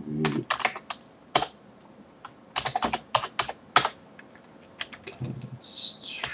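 Typing on a computer keyboard: quick runs of key clicks as terminal commands are entered, broken by a short pause of about a second in the middle.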